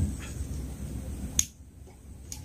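Low rumbling background noise, then a single sharp click about one and a half seconds in, after which the sound suddenly drops much quieter.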